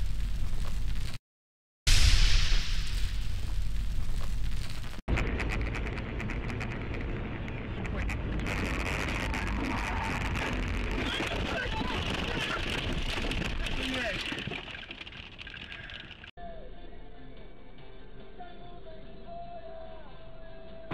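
A loud crash-and-explosion sound effect, cut off after about a second and starting again. Then, after about five seconds, loud dashcam sound from inside a moving car, mostly road and wind noise, which fades down near fourteen seconds. After about sixteen seconds there is quieter cabin sound with a steady hum.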